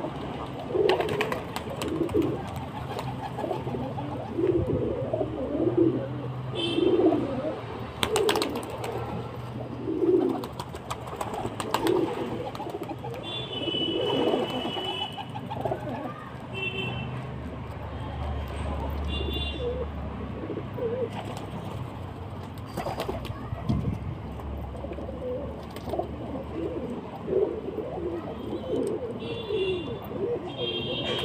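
Domestic pigeons cooing, a run of low coos coming thick and fast in the first half and more sparsely later.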